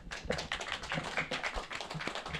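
A small audience applauding: a dense patter of separate hand claps.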